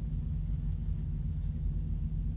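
A steady low drone, a rumble with a faint constant hum, in a pause between speech.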